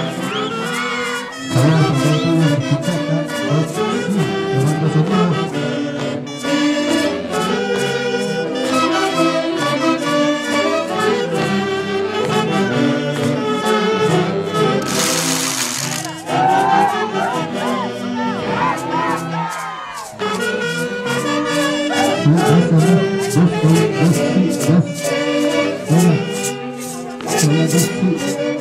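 Brass band of saxophones and trumpets playing a festive dance tune over a steady percussion beat. A loud, noisy burst lasting about a second cuts through about halfway in.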